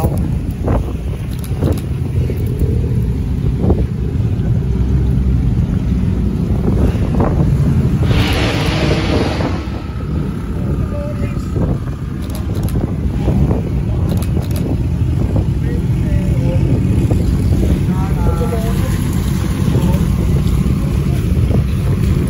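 Low, steady rumble of a twin-turbo Lamborghini Huracán's V10 engine pulling out slowly onto a wet street, with wind buffeting the microphone. About eight seconds in comes a burst of hiss lasting a second and a half.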